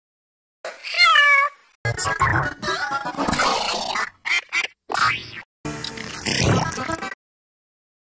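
Effects-processed audio. About a second in comes a short, high, pitch-shifted cartoon cat voice with a falling glide. Then several seconds of choppy, distorted logo music and sound effects follow and cut off about a second before the end.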